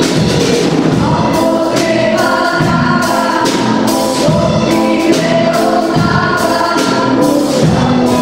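A children's choir singing a song in unison, accompanied by a small ensemble of plucked strings, double bass and accordion.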